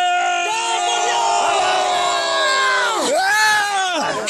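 Loud battle cry: long, held shouting that dips and breaks briefly about three seconds in, then rises again.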